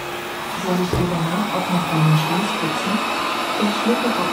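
Robot vacuum cleaner running after a voice command through Alexa, its suction fan making a steady whirring hiss.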